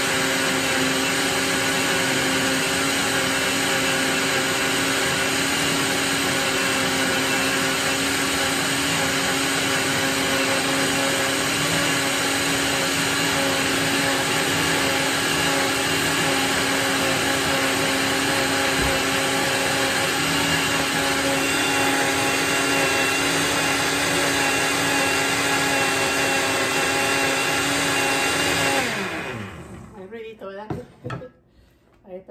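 Countertop blender motor running at a steady speed, puréeing strawberries into a liquid. Near the end it switches off and winds down, its pitch falling as it stops.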